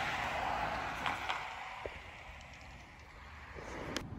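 A small SUV (a Jeep Patriot) driving past on the street, its tyre and engine noise fading away over the first two seconds and leaving a low, quiet street background.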